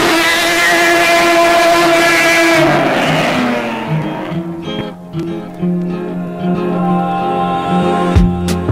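Nissan 350Z's VQ35DE V6 breathing through longtube headers and a cat-back exhaust, accelerating hard: the revs climb, hold high for a couple of seconds, then fall away. From about halfway on, background music with a beat takes over.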